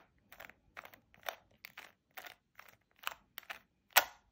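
Plastic layers of a 3x3 Rubik's cube being turned in quick repeated moves, clicking and rasping about three times a second, with one sharper clack near the end.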